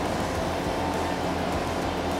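Mini track loader's engine running steadily at working speed, driving a Hydra Bucket rotary tiller that is cutting soil, with a steady high tone over the engine.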